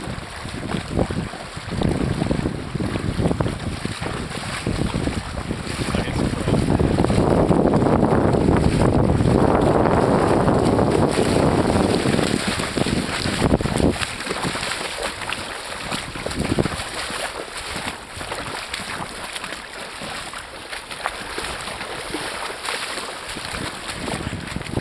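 River water rushing and splashing around wading legs, with wind buffeting the microphone; the noise swells loudest for several seconds in the middle.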